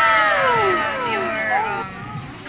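A high, drawn-out 'ooh'-like sound sliding down in pitch, with a short upward swoop near the end.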